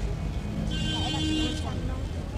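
Busy city street ambience: traffic and people's voices over a steady low rumble, with a high, steady tone lasting about a second in the middle.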